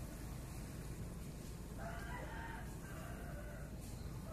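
A rooster crowing once, a single drawn-out call of about two seconds starting around halfway through, over steady low background noise.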